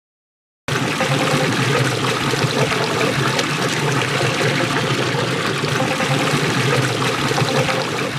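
Water gushing from an irrigation pipe outlet into a concrete basin: a steady, loud splashing rush that starts suddenly just under a second in.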